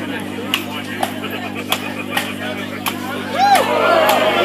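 Axes striking wood in an underhand chop, the axemen standing on their logs: about six sharp blows, roughly every half second or so, over crowd murmur. Voices rise near the end.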